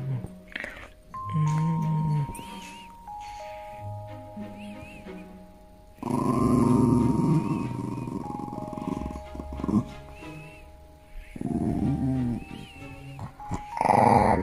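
A Shiba Inu grumbling and growling in bursts while its chin and neck are rubbed, loudest and roughest in a stretch of a few seconds midway, ending in a quacking, Donald Duck-like noise. Background music with held notes plays throughout.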